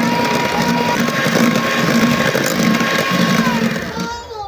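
Electric hand mixer running, its wire beaters whipping mashed avocado in a glass bowl. The motor's whine steps up slightly about a second in and drops near the end.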